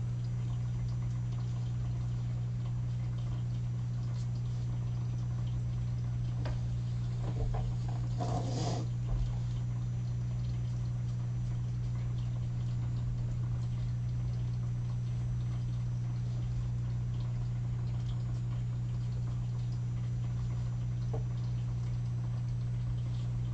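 Steady low electrical hum with faint scratching of an alcohol marker's felt tip stroking across cardstock, and a brief rustle about eight seconds in.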